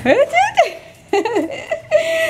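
A person giggling and laughing in a high voice that slides quickly up and down in short pieces.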